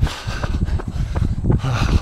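Rumble of wind and movement noise on a handheld phone microphone during a jog, with irregular thuds from footfalls and handling.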